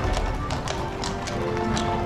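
Background music with steady held notes, over carriage-horse hooves clip-clopping on brick paving about three times a second.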